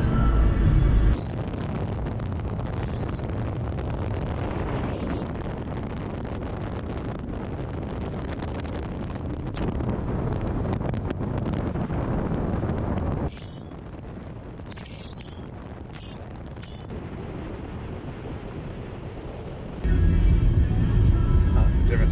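Steady wind rush and road noise from a car driving at highway speed, with wind buffeting an outside-mounted microphone; the loudness steps up and down at several cuts. Near the end it switches to the car's cabin, with music playing.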